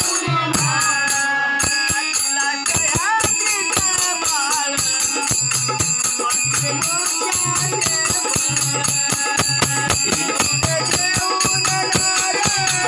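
Group devotional singing (bhajan) with jingling hand cymbals keeping a steady, fast beat throughout; sung phrases rise and fall over the metal clatter.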